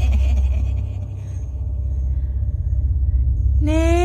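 A deep, steady rumbling drone of a horror soundtrack. A cackling laugh fades out in the first second, and near the end a long wailing sung note begins, rising slightly.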